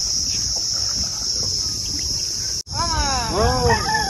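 Steady high-pitched buzzing of an insect chorus in mangrove forest. It breaks off for an instant about two and a half seconds in, then returns under a voice rising and falling in pitch.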